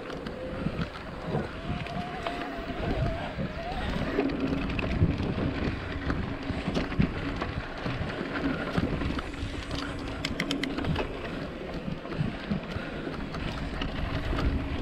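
Mountain bike riding over a dirt singletrack: a continuous rumble of tyres on packed dirt with frequent short rattles and knocks as the bike goes over bumps, and wind on the microphone.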